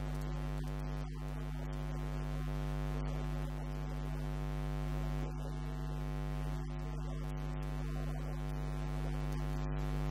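Loud, steady electrical mains hum with a buzz, unchanging throughout. It is a fault in the audio recording rather than a sound in the room, and it covers the track.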